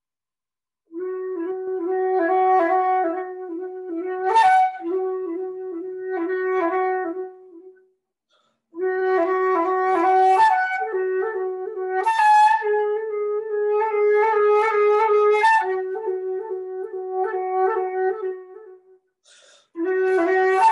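Solo concert flute playing runs of short, rapidly repeated notes on one low pitch, with a few higher notes mixed in. It starts about a second in, stops for about a second near the middle, and pauses briefly again near the end.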